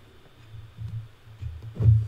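Low bass-drum thumps of an electronic drum-machine beat, faint at first and growing, with a louder thump near the end.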